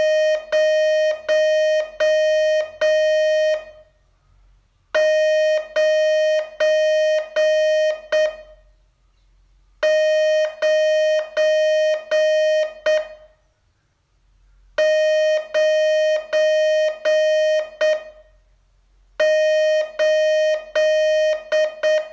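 Morse code tone from a ham radio transceiver sending the digit zero, five dashes, five times over, with a pause of about a second between each. It is a steady, buzzy single pitch keyed on and off at slow practice speed.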